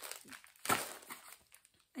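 Crinkling and rustling of a wrapped biscuit packet being handled and put away, with the loudest rustle about two-thirds of a second in.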